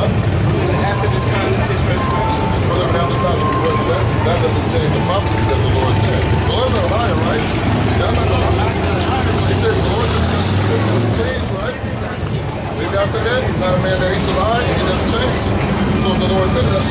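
Voices talking at once, with no one voice clear, over a steady low rumble of street traffic that eases about eleven seconds in.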